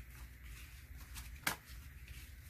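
Paper banknotes rustling faintly as they are counted by hand, with one sharp click about one and a half seconds in, over a steady low hum.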